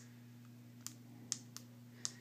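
A few faint, sharp clicks about half a second apart: buttons being pressed on a handheld digital battery analyzer, over a steady low electrical hum.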